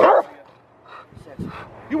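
A Rottweiler gives one short, loud bark right at the start.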